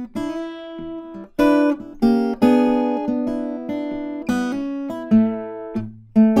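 Steel-string acoustic guitar played fingerstyle blues: single-note licks over a low bass note, broken up by fuller chord hits where several notes ring together.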